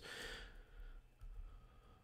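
Near silence: a faint exhale, then a few faint computer keyboard keystrokes.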